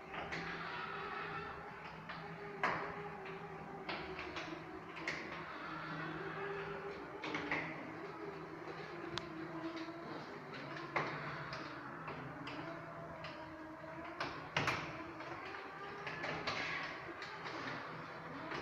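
Caterwil GTS3 tracked stair-climbing wheelchair's electric track drive running on a flight of stairs, a steady motor hum that wavers slowly in pitch. Occasional sharp knocks come every few seconds as it moves.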